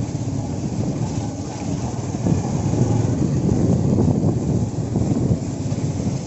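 Wind buffeting the microphone over the low rumble of a moving vehicle, a steady rough roar.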